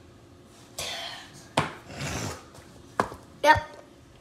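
A person handling a phone on a floor after push-ups: two sharp knocks about a second and a half apart, with breathy rustling noise between them, and a short vocal grunt near the end.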